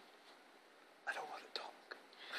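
A man whispering a few words, starting about a second in after a moment of quiet room tone.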